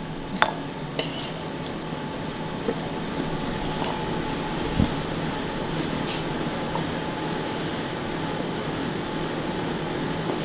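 A fork and spatula scraping and clicking against a metal sheet pan as roasted Brussels sprouts and squash are lifted off it. A few sharp clicks stand out over a steady background hiss.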